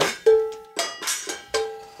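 A bell-like metal object struck about three times, each strike ringing with a clear tone that fades away before the next.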